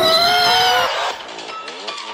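A high-pitched scream that cuts in sharply and is held for about a second, rising slightly in pitch at the start. It gives way to quieter electronic music.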